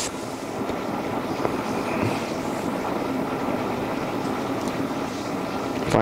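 Steady mechanical hum with a few faint clicks.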